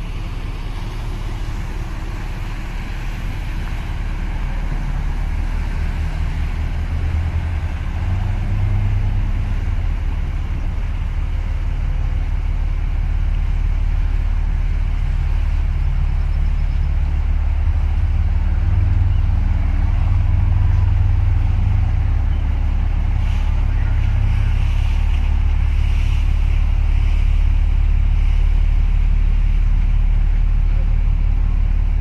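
Deep, steady engine rumble from a large passing ro-ro cargo ship, slowly growing louder as its funnel and stern come level.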